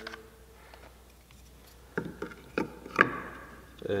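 Hands knocking a wooden piece and a hot glue gun against a plastic mold box and the table while the piece is pressed into the mold. There are four short, sharp knocks in the second half, and the one near the end is the loudest.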